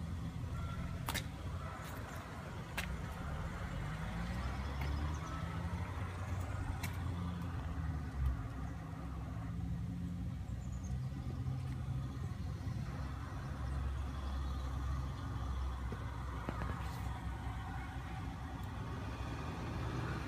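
Steady low engine rumble whose pitch slowly wanders, with a few light clicks over it.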